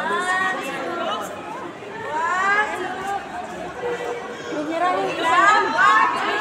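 Indistinct chatter: several people talking, with overlapping voices and no clear words.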